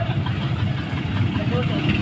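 Small motorcycle engine idling steadily, with a faint voice near the end.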